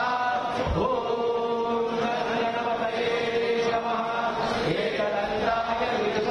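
Hindu devotional mantra chanting by voices in unison, sung on long held notes.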